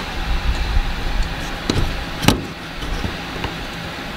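Small flathead screwdriver working the plastic locking tab of the fuel pump module's wiring connector, with a light click and then one sharp click about two seconds in. A low rumble runs through the first second or so, over steady background noise.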